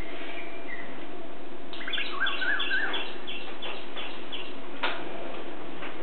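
Birds chirping outside: a quick run of about ten short, high chirps starting about two seconds in, with a lower warbling call under the first part. A single click near the end, over a steady background hum.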